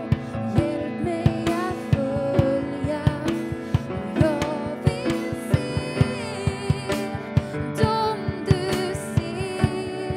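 A live worship song: a woman singing in Swedish over grand piano chords, with a steady drum beat of about three strokes a second.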